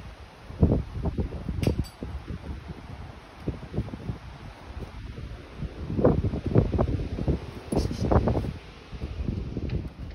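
Wind buffeting the microphone in irregular low gusts, heaviest in the second half, with a couple of faint clicks.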